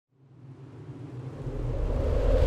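A low rumbling sound effect that fades in from silence and swells steadily louder, building toward a whoosh.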